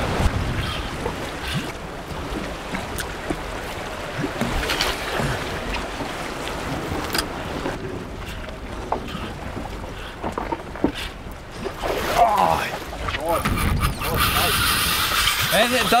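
Wind and sea noise on an open boat, blowing across the microphone, with short shouted exclamations about twelve seconds in and again near the end.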